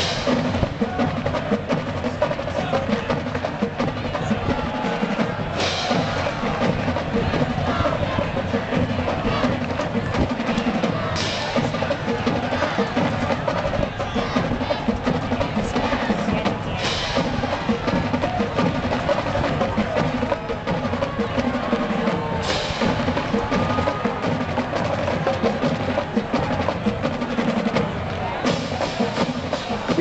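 College marching band drumline playing a cadence of snare rolls and stick clicks over bass drums, with a bright crash recurring about every five or six seconds.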